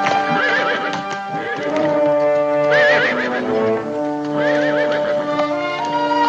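A horse whinnying three times, a quivering cry about half a second in, another near three seconds and a third around four and a half seconds, over hoofbeats on a dirt road. Orchestral score music plays steadily underneath.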